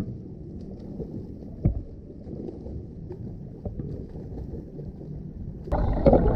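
Low, muffled swimming-pool water noise from a freestyle swimmer, with a few short knocks, one more marked about a second and a half in. Just before the end it suddenly turns louder and fuller, like water and bubbles heard from an underwater camera.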